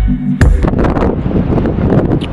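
A bass-heavy music beat stops abruptly about half a second in with a sharp click, giving way to wind buffeting the microphone.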